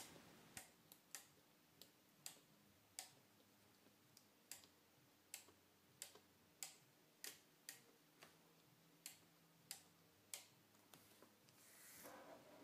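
Faint, sharp clicks at uneven intervals, about two a second, over a faint steady hum. These are the relay computer's relays pulling in one after another as each bit on inputs B and C is switched on.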